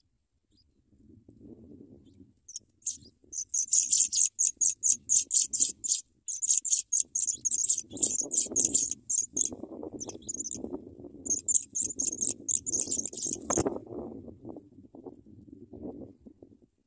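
African pipit nestlings begging: a fast string of thin, high cheeps, several a second, starting a few seconds in, with a short break near the middle and stopping with a sharp click near the end. Rustling in the dry grass of the nest underneath, louder in the second half.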